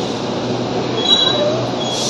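Passenger train coaches rolling slowly along the station platform: a steady running noise from the wheels on the rails, with a brief high squeal about a second in.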